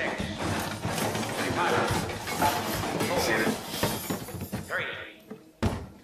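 Soundtrack of a short comedy video clip: a person's voice over a dense, clattering, noisy background, followed by one sharp knock just before the end.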